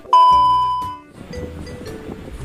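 TV colour-bars test-tone beep: one loud, steady, high beep that lasts about a second and then stops, followed by soft background music.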